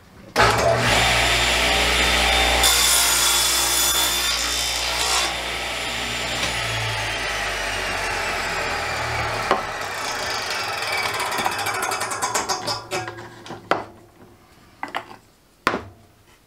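Table saw started up, cutting through a piece of wood on a crosscut sled for about two and a half seconds, then switched off, its blade winding down with a slowly falling pitch. A few sharp wooden knocks come near the end.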